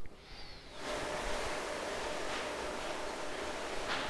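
Steady background hiss in a lecture hall, setting in about a second in after a brief near-quiet moment, with no distinct event in it.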